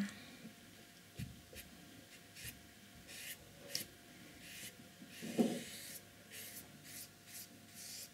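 Thin paintbrush stroking paint onto paper: a run of short, scratchy brush strokes, with one louder brief sound about five seconds in.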